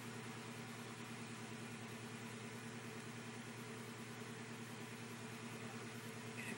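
Faint steady low hum with an even hiss underneath: background room tone. The sponge dabbing makes no separately audible sound.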